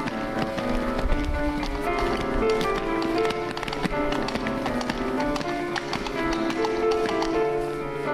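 Piano accompaniment playing, with many quick footsteps of children running and stamping across a stage floor, sharp taps throughout.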